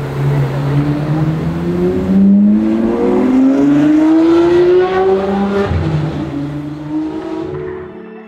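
Ferrari 599's V12 engine accelerating hard. It runs low and steady at first, then climbs in pitch for a few seconds, drops suddenly at an upshift about six seconds in, climbs again and fades away.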